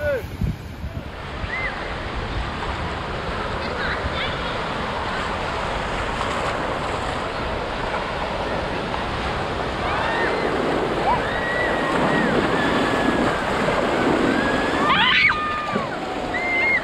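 Surf breaking and washing through the shallows, mixed with wind on the microphone, as a steady rush of noise. Children's distant shouts and calls come through over it, more of them in the second half.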